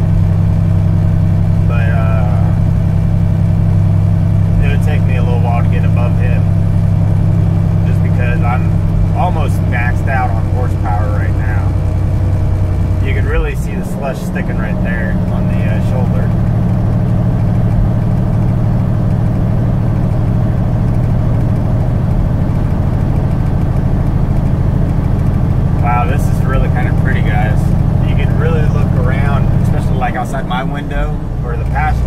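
Semi-truck diesel engine droning steadily, heard from inside the cab while driving at highway speed. About fourteen seconds in, the engine note dips briefly and settles at a different pitch.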